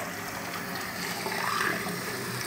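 Hot water from a kitchen tap running steadily into a glass held under the stream, splashing into the sink.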